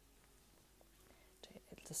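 Near silence: room tone, with a woman starting to speak softly near the end.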